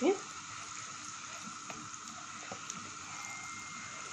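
Spices frying in hot oil in a pan, stirred with a silicone spatula: a steady, even sizzle as the spices bloom in the oil.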